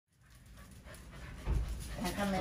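Welsh corgi panting, faint at first as the sound fades in, with a low thump about one and a half seconds in.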